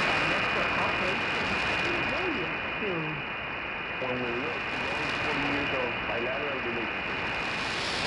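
Weak shortwave AM broadcast on 9570 kHz received by an RSPduo SDR through an MFJ end-fed wire antenna: loud hiss and static with a steady high whistle, and a voice only faintly audible beneath the noise. The signal barely rises above the noise, a sign that this antenna is doing poorly on this station.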